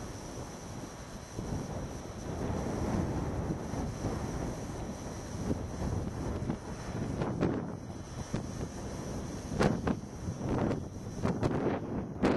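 Wind buffeting the camera microphone as a steady rush, with several short stronger gusts in the last few seconds.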